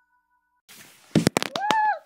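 Silence, then a few sharp clicks and knocks from the phone camera being handled as a new shot starts, followed by a short high-pitched girl's vocal sound near the end.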